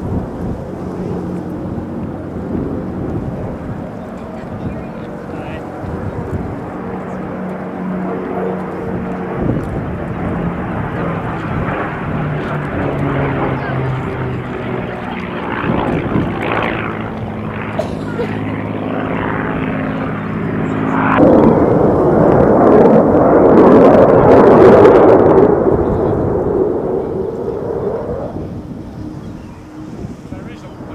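A Spitfire's piston engine drones through display manoeuvres, its pitch slowly shifting as it turns. About two-thirds of the way in, a much louder jet roar cuts in, swells to a peak and fades away as a Eurofighter Typhoon passes.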